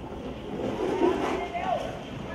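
People's voices calling out, loudest about a second in.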